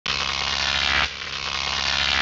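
Loud, harsh electronic buzz of a logo intro sting, held in blocks that change abruptly about a second in.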